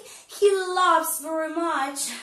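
A woman singing a lively phrase in a high, childlike voice, with held and sliding notes after a brief pause near the start.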